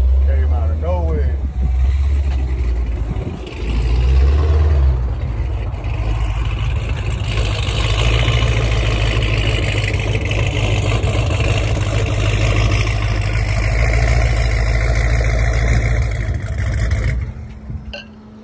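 Supercharged Jeep Grand Cherokee Trackhawk's 6.2-litre Hemi V8 running through an aftermarket GTHAUS exhaust as it moves slowly across a lot, a deep steady exhaust note that briefly dips early and drops away sharply near the end.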